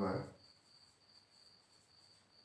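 A man's voice trails off just after the start, leaving a faint, steady high-pitched tone that holds on unchanged underneath.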